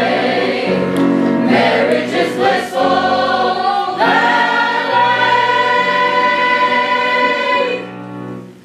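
A mixed cast of singers singing the close of a stage-musical ensemble number. From about four seconds in they hold one long final note, which stops just before the end.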